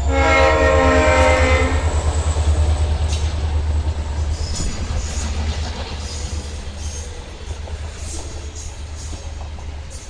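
Diesel freight locomotives passing close, with a low engine rumble and the horn sounding for about two seconds at the start. The rumble fades as the locomotives move off, leaving the hopper wagons' wheels clicking over the rail joints.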